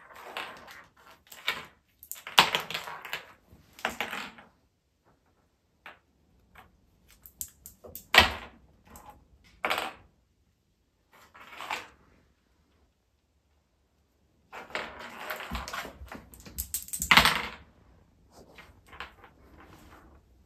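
A kitten batting a small string-tied toy across a hardwood floor: spells of rapid clattering and knocking with pauses between them, the loudest knocks about two, eight and seventeen seconds in.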